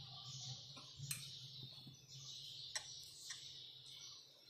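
A spoon clinking lightly against a wine glass three times as custard is spooned in: short, faint ticks about a second in and twice near the end.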